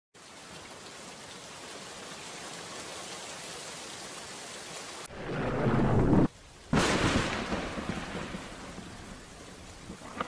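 Thunderstorm sound effect: steady rain hiss, then about five seconds in a peal of thunder builds into a heavy rumble. The rumble cuts off abruptly for half a second, as if edited, and a second loud thunderclap follows and rolls away under the rain.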